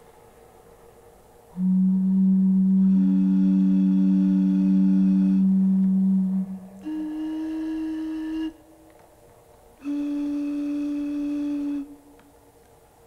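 Long, steady held musical notes with no wavering in pitch. A low note enters about a second and a half in and holds for about five seconds, and a higher note sounds over it for a while. Then come two shorter, higher notes, each on its own with a pause between.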